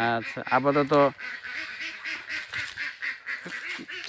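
Ducks quacking in a quick, busy run of calls, about four or five a second, after a man's brief words.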